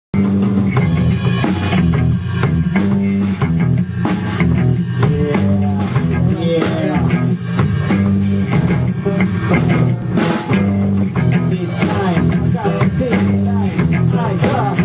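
A funk band playing live in a rehearsal studio: drum kit, electric guitar and a steady low bass line in a continuous groove.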